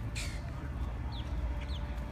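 A bird chirping: short, quick downward-sliding calls that repeat about every half second, over a steady low rumble, with a brief hiss a quarter second in.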